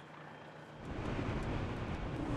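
A car driving, its engine and road noise faint at first, then swelling about a second in and holding steady.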